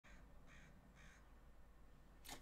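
Near silence with three faint, short calls about half a second apart, from a distant bird.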